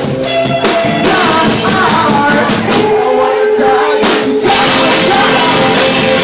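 Rock band playing live and loud: sung vocals over electric guitars, bass and a drum kit. About three seconds in, the bass and kick drop out for about a second while a held note rings, then the full band comes back in.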